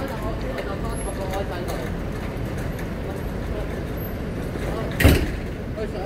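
City street ambience: a steady low hum of traffic with faint voices in the background. A single sharp knock sounds about five seconds in.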